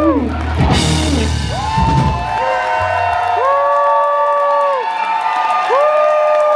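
A live band ends a song with a final hit under a second in, its bass ringing on and stopping about halfway through. The audience then whoops, with several long 'woo' calls that rise, hold and fall.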